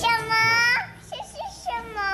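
A high-pitched voice making two long drawn-out notes, the second sinking slowly in pitch, with a few short squeaks between them.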